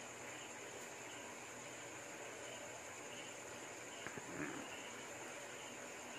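Quiet room tone in a pause: a steady faint hiss with a thin, constant high whine, and a faint click about four seconds in.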